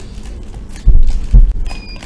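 Two dull, heavy thumps about half a second apart as a boxed toy is handled against the tabletop. A short faint high squeak follows near the end.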